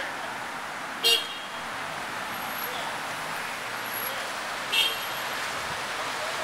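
Steady street noise of traffic on a wide avenue, with two short car-horn toots, one about a second in and another near five seconds in.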